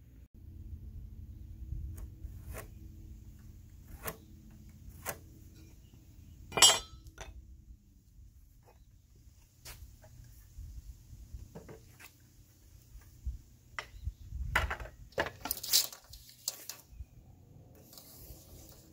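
Handling of a tape measure and a cordless circular saw on a pine board while measuring for a cut: scattered light clicks and knocks, one sharp ringing click about a third of the way in, and a stretch of scuffing near the end, over a faint low hum. The saw is not running.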